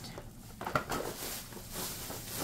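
Cardboard boxes of K-cup coffee pods being handled and set down, with light rustling and a few soft knocks.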